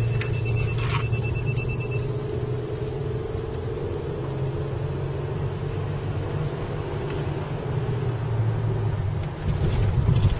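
A rapid series of short high beeps for about the first two seconds from the Geotab GO in-vehicle device's buzzer, its alert for harsh cornering, over the steady engine and road noise heard inside the car.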